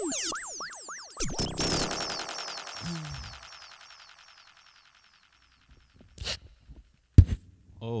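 A sigh into the microphone run through a live vocal effect: a burst of falling, warbling tones that repeats over and over, fading out over about four seconds. A short click and then a sharp thump follow near the end.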